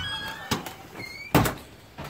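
A door being opened and pulled shut: a knock about half a second in, then a louder thud about a second and a half in.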